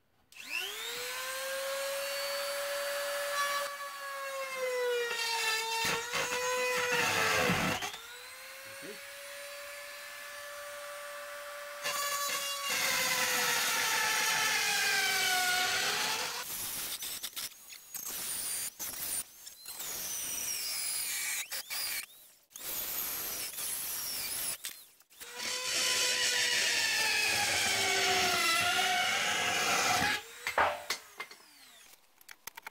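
Handheld rotary tool with a cutting bit whining at high speed as it cuts a circular hole through a wooden plank ceiling. Its pitch sags each time the bit bites into the wood, dropping almost to a stall a few seconds in, and the tool stops and starts several times, choppily in the second half.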